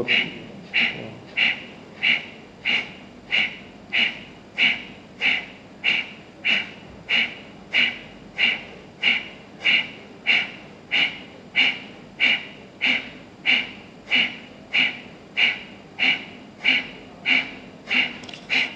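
Kapalbhati pranayama breathing: short, forceful puffs of breath out through the nose in an even rhythm, about one and a half to two a second.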